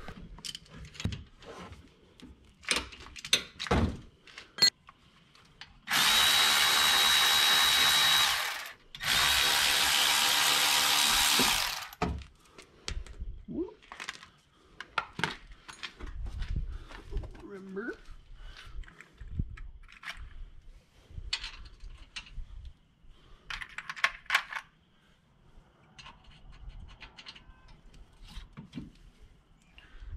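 Handheld power tool run twice in long bursts of about two and a half seconds each, a steady motor whine with a high tone. Around the bursts come scattered clicks and clinks of hand tools and metal parts.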